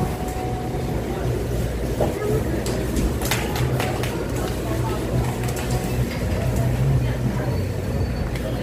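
Grocery store background noise: a steady low machine hum with indistinct voices, and a few sharp clicks about three seconds in.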